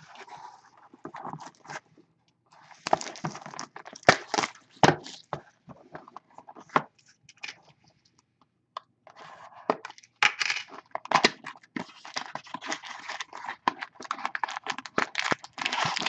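Plastic wrapping crinkling and tearing as a small trading-card box is opened and its foil card packs are handled and taken out. The sound comes in irregular crackly bursts with sharp clicks, with a short pause about halfway through.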